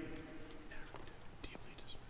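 Faint rustling and a few soft clicks from people moving about near the lectern, in a quiet, echoing room.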